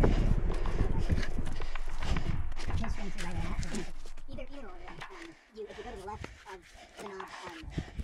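Scrambling up rock: scuffs and knocks of shoes and hands on stone over a low rumble on the microphone, loudest in the first few seconds. Quieter voices talk through the second half.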